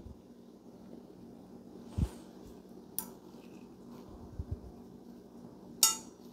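Quiet handling noises as an upper valve spring seat is fitted onto its valve spring: a few scattered light taps and small metal clicks, the sharpest just before the end.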